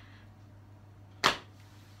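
A pause in speech filled by a steady low hum, with one short whoosh of noise about a second and a quarter in.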